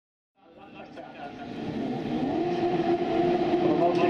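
Engines of several autocross racing buggies on the start grid, fading in from silence; their revs rise and fall, then are held at a steady pitch.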